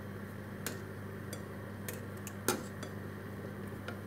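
A metal spoon clinking lightly against a stainless steel pot as dumplings are lowered into boiling water and nudged along the bottom: a few scattered taps, the sharpest about two and a half seconds in, over a steady low hum.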